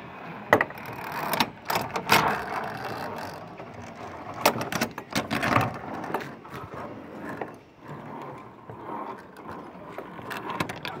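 Metal belay trolley being clipped onto a steel safety cable and rolled along it: sharp metallic clicks and clacks from the carabiner and trolley in the first few seconds, then the trolley's wheels rumbling along the cable.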